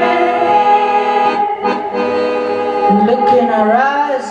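Accordion playing sustained, drawn-out chords, with a tone gliding upward in pitch near the end.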